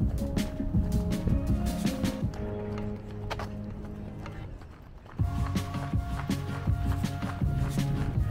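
Background music with a steady beat; it thins out and softens about three seconds in, then comes back in full about two seconds later.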